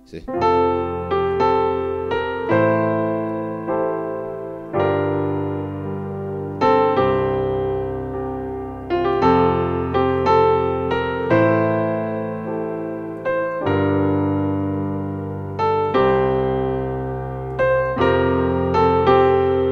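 Piano keyboard playing a slow chord progression in F with the melody on top, using suspended chords such as F sus2 and F sus2 sus4. Chords and bass notes are struck every second or two and ring and fade between strikes.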